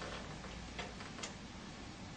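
Quiet room ambience with a couple of faint, soft ticks.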